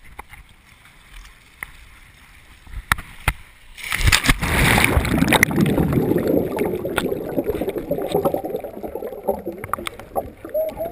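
Faint water movement with a few sharp knocks on the camera. About four seconds in, the camera plunges underwater with a loud rush, followed by the muffled churning and bubbling of water stirred up by a swimmer kicking, which slowly eases.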